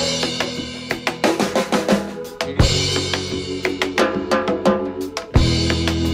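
Live band playing a percussion-driven groove: drum kit and hand-played congas with many rapid hits, over held low notes. Strong accented hits come at the start, about midway and near the end, each starting a new held low note.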